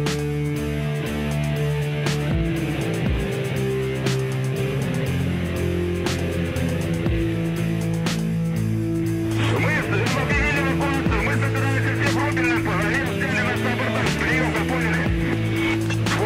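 Background music with long held low notes and a regular beat about every two seconds; about halfway through, a voice comes in over it.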